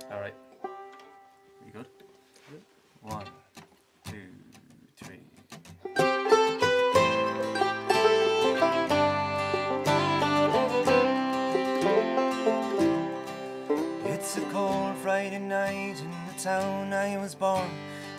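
A few quiet single notes and a held tone, then about six seconds in an acoustic string band of guitar, banjo, mandolin and fiddle strikes up together and plays an instrumental intro in an Irish-bluegrass style.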